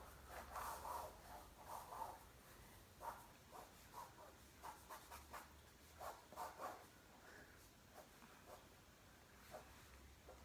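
Faint, quick scratching strokes of drawing on paper, coming in irregular bursts that thin out near the end.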